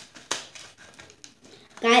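Items being handled on a table: a few short clicks and light rustles, the loudest a sharp click about a third of the way in.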